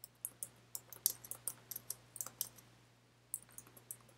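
Light, sharp clicks and taps, several a second and irregularly spaced, thinning out after about two and a half seconds, over a faint steady low hum.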